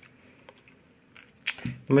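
Quiet room with a few faint clicks of plastic DIN-rail surge protector modules being handled on a desk. A sharper click comes about one and a half seconds in, just before a man starts speaking.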